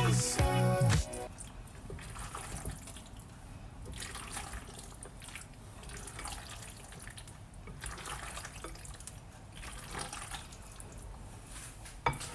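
A spatula stirring and folding a mayonnaise-dressed pasta salad in a glass bowl: faint, irregular wet mixing sounds. Background music plays over the first second or so, then stops.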